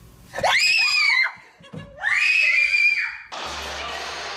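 A girl screaming in fright twice, two long high-pitched screams about a second apart. They are followed by a sudden switch to steady noise of a large hall.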